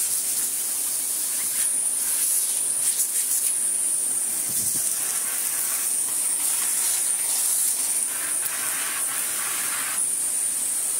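Canister vacuum cleaner running with a steady high whine and rush of air, its bare hose end sucking caked dust off a robot vacuum's pleated filter and out of its dust bin. The rush changes as the hose mouth is pressed against the filter and bin.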